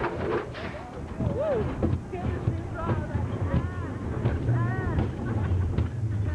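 Amusement park ride train rumbling steadily along its track with riders aboard. The riders' voices call out over it in several rising-and-falling cries around the middle.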